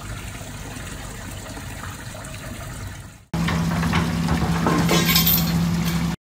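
Water running and trickling into a manhole, a steady wash of noise. About three seconds in it cuts off abruptly, and a louder steady hum with hiss takes over.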